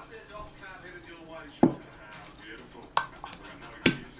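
Three sharp knocks on a table, a little over a second apart, as a baking pan and kitchen things are handled. Before them, a high cooking-oil spray hiss stops about a second in.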